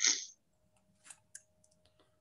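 A short breathy hiss at the very start, then two faint sharp clicks about a second in, over a faint steady hum.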